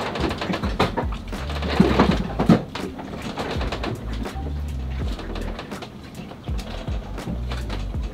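A sailboat's interior creaking and rattling as the hull rolls in a passing yacht's wake, with many small knocks and clicks from loose gear and joinery.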